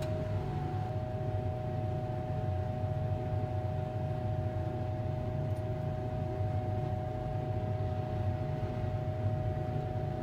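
Steady drone of a fume hood's exhaust fan: a low rumble with a constant mid-pitched hum over it, and one faint tick about halfway through.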